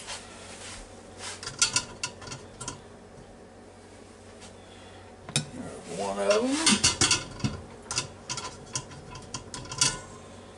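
Metal kitchen tongs clicking and clinking against a china plate and the cooker's pot, in scattered clusters of short sharp clinks, as pressure-cooked pork chops are lifted out and set down. A brief murmur of a man's voice about six seconds in.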